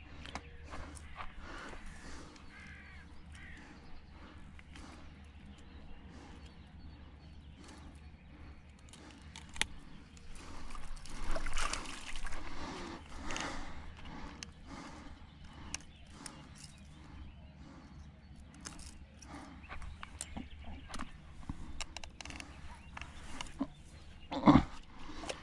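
A hooked asp splashing in the shallows and thrashing in a landing net as it is landed, loudest in a run of splashes about halfway through, with scattered clicks of tackle being handled.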